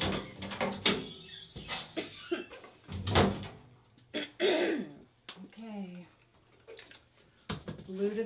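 A girl coughing a couple of times, the loudest about three seconds in, with brief throat and voice sounds after it, acted as the coughing of an allergic reaction. Small clicks and handling noises come from an EpiPen being taken out.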